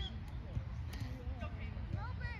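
Faint, distant voices of players and spectators calling out across a soccer field, over a steady low rumble.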